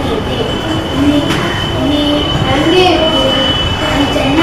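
Children's voices talking in a classroom, with a thin steady high whine behind them.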